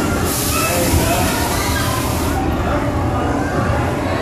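Background hubbub of a large indoor hall: scattered distant voices over a steady low rumble. A hiss starts just after the beginning and stops about halfway through.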